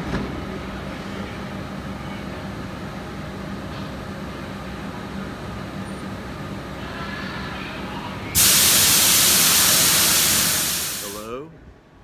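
Heathrow Express electric train at the platform with a steady low hum, then about eight seconds in a sudden loud hiss of released air that lasts about three seconds and fades away.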